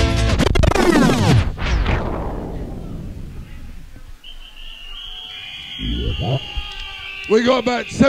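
Early-90s hardcore rave music from a live DJ-set tape sweeps down in pitch and fades out over the first few seconds. In the lull a single steady high tone holds for about three seconds, then a man's voice comes in over a beat near the end.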